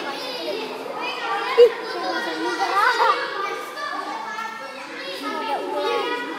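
Children's voices talking and calling out over one another.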